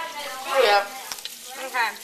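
Tap water running into a stainless steel sink as hands are rinsed under it, a steady hiss. A person's voice sounds briefly twice over it, about half a second in and near the end.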